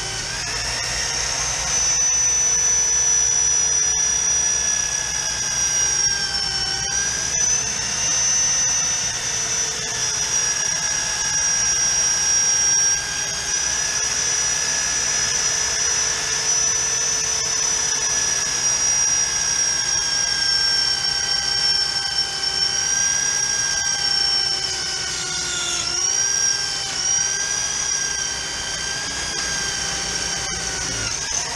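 Electric drill in a magnetic drill base running steadily under load, its bit cutting into a gun safe's steel wall, a high whine with brief dips in pitch where the bit bites harder and the motor slows.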